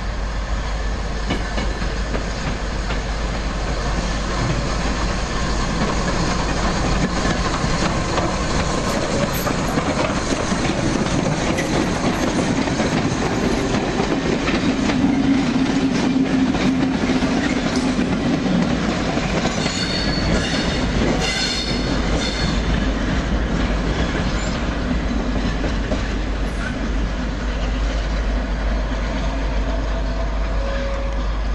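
Railway coaches rolling past close by, wheels clacking over the rail joints, with a brief high squeal of wheel flanges about twenty seconds in.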